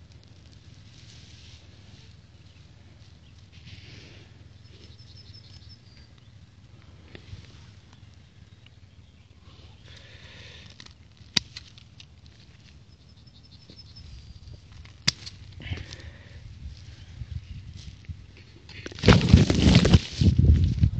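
Faint rustling of hands working in grass and soil, with two sharp snips of garden pruning shears cutting grass stems, about eleven and fifteen seconds in. Near the end, a loud close rustle as leaves brush right against the microphone.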